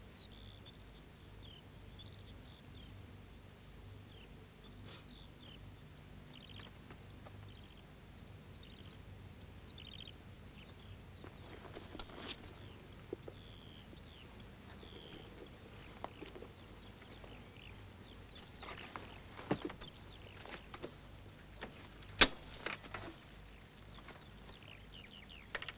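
Birds chirping, many short rising and falling calls through the first half, over a faint low hum. In the second half come scattered clicks and knocks, the loudest a sharp click a couple of seconds before the end.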